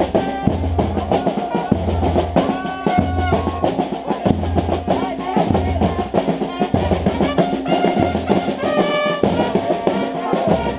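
Fanfarra (Brazilian marching band) playing a march. Snare drums rattle and roll over a deep bass-drum beat about once a second, and trumpets come in with short held phrases a few times.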